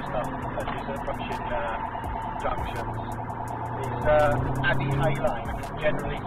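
Engine and road noise heard from inside a police pursuit car, with a low steady drone that grows stronger in the middle; a man's voice comes in briefly near the end.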